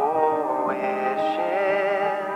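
Electronic pop song with a processed sung vocal holding a long, wavering note over sustained chords, with a short rising slide just past the middle.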